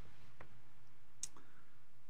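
Pause between sentences: steady low room hiss with two faint short clicks, about half a second and a second and a quarter in.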